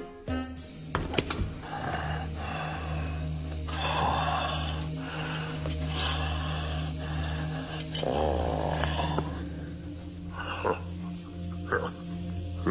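Background music with a steady low bass, over which an animal, tagged as a dog, makes vocal sounds in repeated bursts of about a second each, with a few shorter, sharper sounds near the end.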